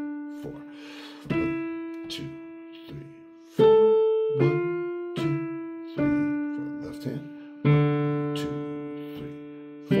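Digital piano playing a slow, simple two-hand piece in a five-finger position on D, with both hands striking together. The notes come one at a time, about one every second, and each rings and fades before the next. The loudest note falls a little over three seconds in.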